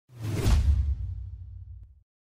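Whoosh sound effect with a deep rumble underneath for a logo reveal, swelling to its peak about half a second in and fading away over the next second and a half.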